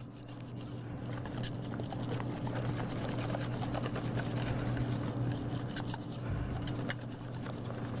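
Wire whisk beating thin cake batter in a stainless steel bowl: continuous rapid rubbing and scraping of the wires against the metal, breaking up the lumps. A steady low hum runs underneath.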